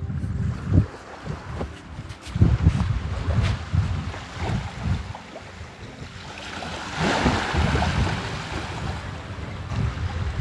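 Wind buffeting the microphone in uneven low gusts, over small waves lapping on a sandy shore. A louder hiss of surf swells about seven seconds in.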